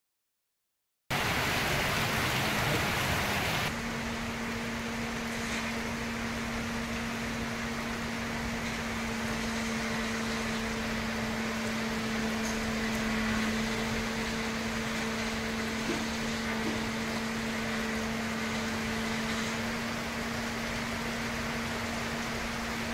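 Steady hiss of heavy rain starting about a second in, harsher for the first few seconds, with a steady low hum running alongside it from about four seconds on.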